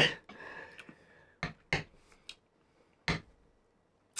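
A few short, sharp clicks, spread unevenly over a couple of seconds, with quiet between them.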